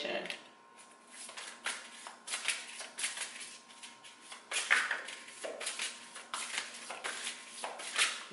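Oracle cards being handled and shuffled: a run of irregular card rustles and flicks, a few clustered and some louder than others.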